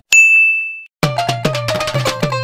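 A single bright bell-like ding that rings and fades out in under a second. After a brief silence, upbeat music with a drum beat starts about a second in.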